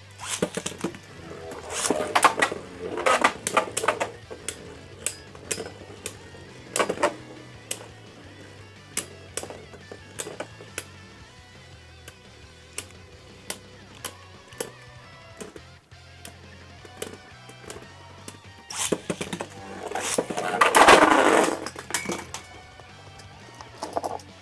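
Beyblade Burst spinning tops clashing in a plastic stadium, with many sharp clicks and clatters as they strike each other and the walls. A longer, louder rattling rush comes near the end. Background music plays underneath.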